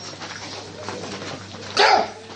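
A dog barks once, loudly, near the end, over a faint busy background.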